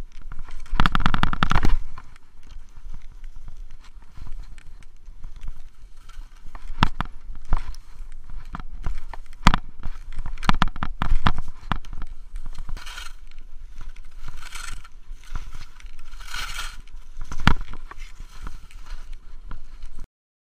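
Skis running down a snowy slope: a loud rattling scrape about a second in, then hissing swishes of the skis through the snow on the turns near the end, with scattered sharp clicks and knocks throughout.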